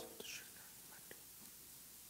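A priest's faint whispered prayer, the quiet words said at the altar while water is added to the wine in the chalice, with a brief clink right at the start. Otherwise it is almost silent.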